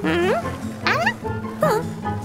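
Background music with three short, gliding, squeaky vocal cries from cartoon children about a second apart, each sweeping upward in pitch.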